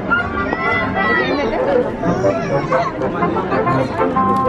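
Indistinct chatter of several people's voices talking over one another, with no clear words.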